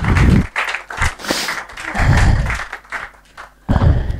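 Audience applause at the end of a talk: many hands clapping, thinning out shortly before the end, with a few heavy low thuds mixed in.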